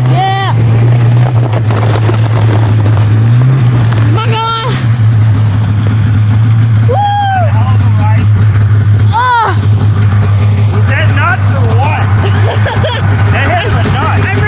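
Snowmobile engine running at a steady low drone, with several short, high-pitched yells from riders over it and more voices near the end.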